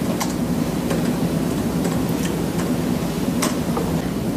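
Scattered light clicks of a laptop keyboard, irregular and a few per second at most, over a steady background hum.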